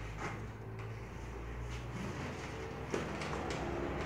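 Soft handling sounds of damp handmade paper being hung on a line with wooden clothespins, with a few light clicks, the sharpest about three seconds in, over a steady low room hum.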